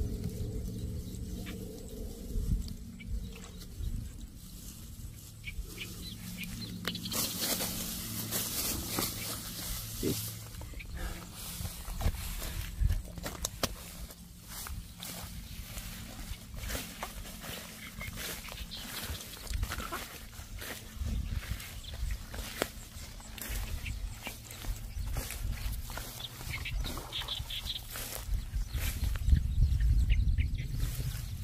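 Tall grass rustling and crackling as it is handled and walked through, many small crackles with a low steady hum underneath.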